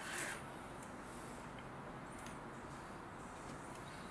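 A brief scrape right at the start, then low steady room noise with a few faint light clicks.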